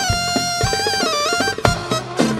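Instrumental break in an Arabic dance song: a single lead melody line moving in small ornamented steps over a steady, quick percussion beat, with a louder hit near the end.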